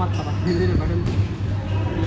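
A few sharp hits of badminton rackets on a shuttlecock, ringing in a large hall, over the chatter of players' voices and a steady low hum.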